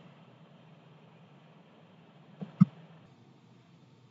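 Quiet room tone with a low steady hum, broken once about two and a half seconds in by a brief vocal noise from the narrator.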